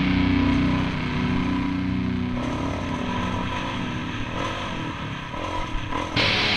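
Rock music soundtrack dropping away between songs, leaving a dirt bike's engine revving up and down as it rides a trail. Louder music starts right at the end.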